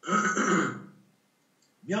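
A man clears his throat once, briefly.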